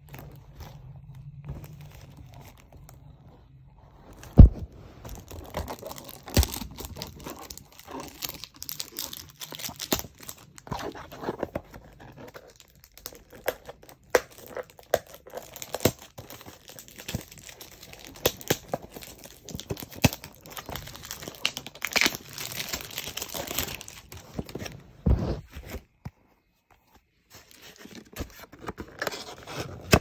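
Plastic wrapping being torn off a cardboard perfume box and crinkled in the hands, with irregular crackling and small handling knocks, and one loud knock about four seconds in.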